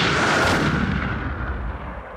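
A produced boom sound effect: a sudden loud crash with a rushing tail that fades away over about three seconds.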